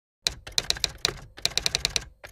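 Typewriter typing sound effect: a quick, uneven run of sharp key clicks, several a second with a short break about halfway, as animated title text is typed out letter by letter.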